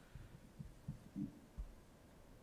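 Near silence: room tone with a few faint, short low thumps.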